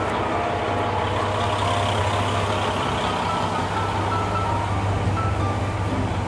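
A local train standing at a station platform with its engine running: a steady, even low hum. A faint high beeping tone repeats on and off over it.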